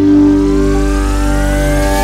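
Hardstyle track build-up: a sustained synth chord over a low drone, with a synth riser sweeping steadily upward in pitch. A higher held note joins under a second in.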